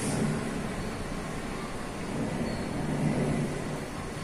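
Steady room hum and hiss while a marker writes on a whiteboard, with a brief faint squeak about halfway through.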